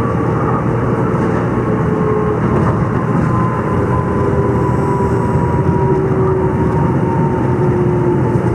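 Light rail train running, heard from inside the passenger car: a steady rumble and rush with a motor whine that slowly falls in pitch.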